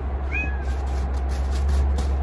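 A Bengal cat gives one short meow about half a second in, over a steady low rumble.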